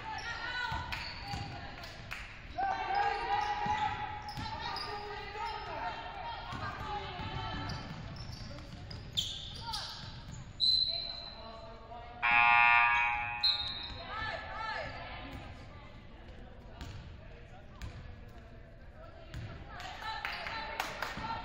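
A basketball bouncing on a hardwood gym floor during play, with players' voices calling out across an echoing gymnasium. About twelve seconds in, one voice gives a loud call lasting over a second, the loudest sound here.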